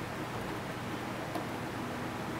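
Steady background hiss with a faint click a little past halfway through, as a glass nail polish bottle is handled on the table.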